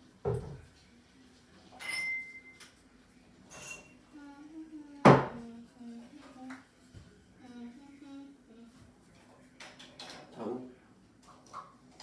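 Kitchen clatter of dishes and utensils: scattered knocks and clinks, the loudest a sharp knock about five seconds in, with a short high beep near two seconds. Faint voices murmur underneath.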